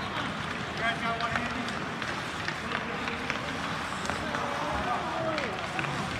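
Indoor ice hockey rink during play: skates scraping and sticks and puck clicking on the ice over a steady rink hum, with indistinct spectator voices calling out about a second in and again near the end.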